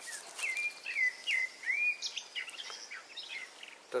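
A songbird singing outdoors: a run of short, slurred whistled notes, clearest in the first two seconds and fainter afterwards, over a light steady background hiss.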